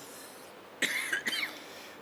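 A person coughs briefly about a second in, a sharp burst with a smaller second one right after.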